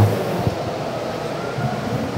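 Steady background noise of a large exhibition hall, a low even rush with faint distant sounds in it, during a pause between speakers.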